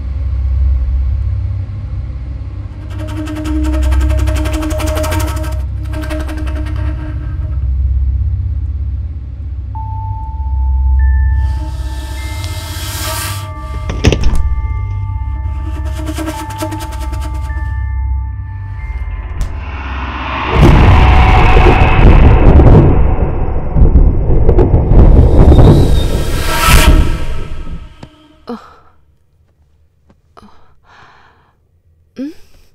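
Film background score: a deep pulsing bass under long held tones, with a single sharp hit about halfway through. In the last third it swells into a loud, dense passage, then cuts off abruptly shortly before the end.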